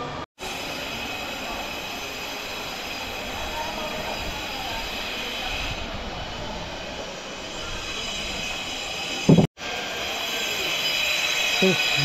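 Steady mechanical noise with a high, many-toned whine running underneath. It cuts out to silence briefly twice.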